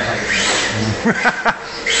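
Electric motor of a radio-controlled drift car whining as the car drives and slides, rising in pitch near the end, with a person chuckling briefly around the middle.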